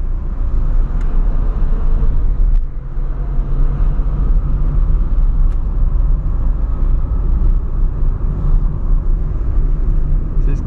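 Inside the cabin of a 2003 Ford Fiesta Supercharged under way, its supercharged 1.0-litre engine running with a steady drone over road rumble. The drone briefly dips about two and a half seconds in.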